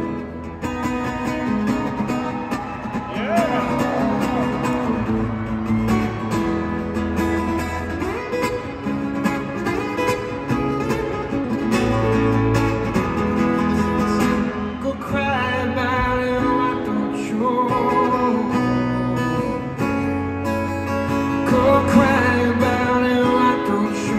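Solo acoustic guitar playing a slow instrumental passage of a ballad: a picked melody over a steady low bass line, with a few notes bent in pitch.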